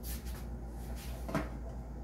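A short knock about a second and a half in, with light rustling and clicks, as a person moves and handles things right beside the recording device, over a steady low hum.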